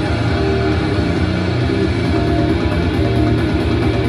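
Loud live heavy metal played through a PA, dominated by a low, heavily distorted electric guitar and bass, steady and unbroken. It is heard from the audience.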